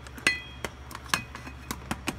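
A handful of sharp knocks and clicks, about five in two seconds. The loudest comes a quarter-second in and is a metallic clink with a short ring. They come from a handheld work light being fumbled against the metal of a golf cart's engine compartment.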